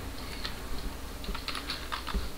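Typing on a computer keyboard: a few scattered keystrokes, one about half a second in and a quick run of them in the second half.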